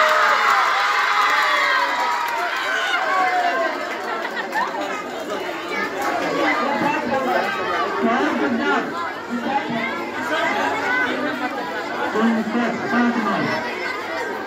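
Many children chattering and calling out at once, a dense hubbub of overlapping young voices, loudest in the first few seconds.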